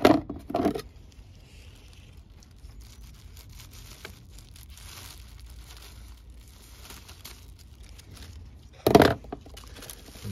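A thin plastic bag around a potted fern crinkling and rustling as it is cut at the tie with scissors and pulled open. The crinkling is loud briefly at the start and again about nine seconds in, with faint handling noise in between.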